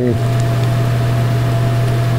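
A steady low hum with an even hiss over it, unchanging and about as loud as the talk around it.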